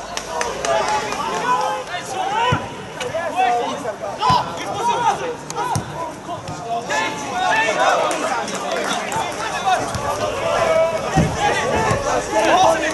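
Players and spectators calling and shouting over one another on a football pitch, with a few sharp thuds of the ball being kicked.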